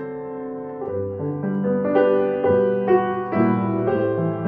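Grand piano playing a hymn arrangement in full chords over a bass line, a new chord or melody note struck about every half second and left to ring.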